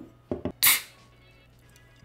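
Nitro cold brew coffee can opened by its pull tab: a few quick clicks, then a short, sharp pop and hiss as the nitrogen-charged can vents, a little over half a second in.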